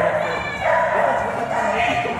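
A dog whining and yipping in drawn-out, high cries, two of them back to back, then a shorter, higher one near the end.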